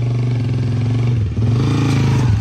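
An engine running steadily, loud and even, its pitch dipping briefly a little over a second in and then rising again.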